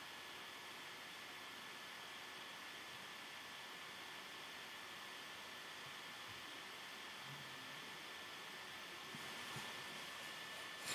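Low, steady hiss of background noise with a faint, thin, high steady whine through it, and a few faint clicks near the end.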